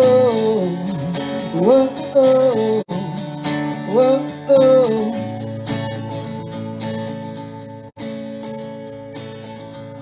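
Acoustic guitar strummed, with a man's voice singing a few drawn-out wordless notes over it in the first half. After that the guitar plays on alone and grows slowly quieter.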